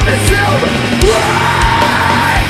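Live post-hardcore band playing: distorted electric guitars, bass and steady drum hits under a screamed lead vocal.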